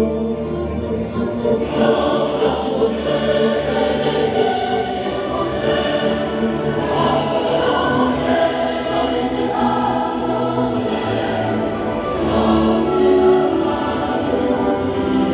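A choir singing slow, held notes over music, swelling in loudness a couple of times.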